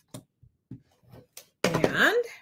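Faint, brief taps and rustles of cut cardstock and paper pieces being handled and set down on a wooden table, a handful of separate soft sounds over about a second and a half, before speech resumes near the end.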